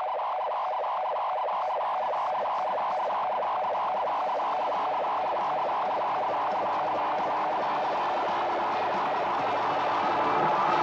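Music: the intro of a rock track, a filtered, effects-processed guitar or synth tone pulsing in a fast, even rhythm. It grows gradually brighter and slightly louder toward the end.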